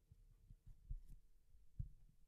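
Near silence with a few faint, short low thumps, the clearest about a second in and near the end: handling and movement at a drum kit.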